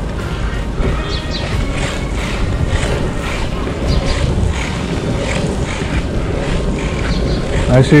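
Longboard wheels rolling over rough, gravelly asphalt: a steady rumble, with wind noise on the microphone.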